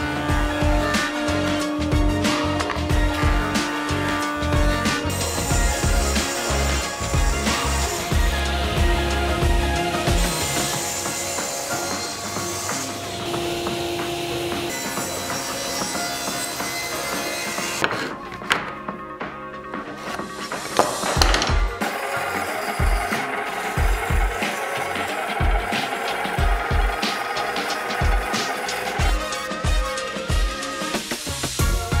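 Background music over woodworking machine noise: a jointer planing a small oak block, then a table saw cutting oak filler pieces. Near the end a regular beat from the music takes over.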